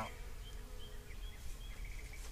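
Honeybees buzzing around their opened comb, a steady buzz that is clearest in the first second and fades.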